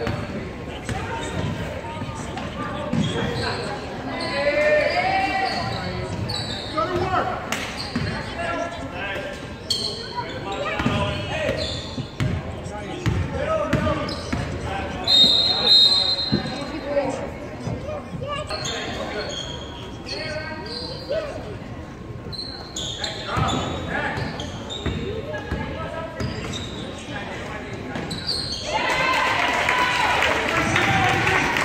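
Basketball game on a hardwood gym floor: the ball bouncing and dribbling, with players' and spectators' voices echoing in the hall and a referee's whistle about halfway through.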